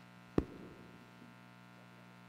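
Steady electrical hum from the auditorium PA system, with one sharp thump about half a second in as the microphone is handled.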